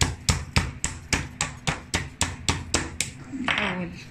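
Wooden meat mallet pounding a raw whole chicken on a plastic cutting board to tenderize the breast. It lands about a dozen quick, even blows, roughly four a second, which stop about three seconds in.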